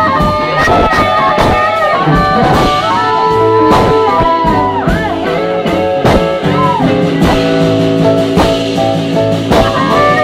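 A live blues band playing an instrumental passage: electric guitar to the fore over drums and upright bass, with long held lead notes that bend in pitch.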